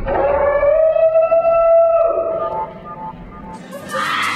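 A single long, loud pitched cry, rising slightly and then held for about two and a half seconds. Music cuts in near the end.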